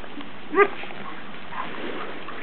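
A standard poodle gives a single short bark about half a second in while two poodles wrestle in play.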